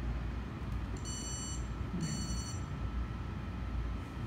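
Two short, high-pitched electronic beeps, each about half a second long, about a second apart, from a bench DC power supply as its buttons are pressed, over a steady low room hum.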